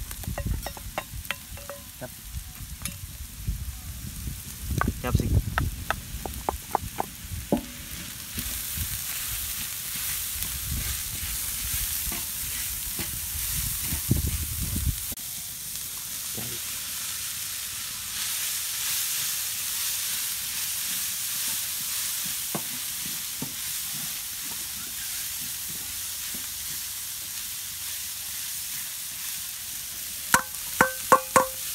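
Chopped onion, carrot, corn and shredded cabbage sizzling in oil on a large flat pan, stirred with a wooden spatula that scrapes and taps against the pan in sharp strokes during the first several seconds. The sizzle gets louder about eight seconds in and again past the middle as more vegetables go in.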